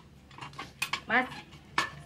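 A few sharp clinks and knocks of small hard household items being handled on a shelf.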